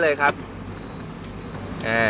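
A brief spoken phrase, then a steady low background hum with no distinct handling clicks or knocks.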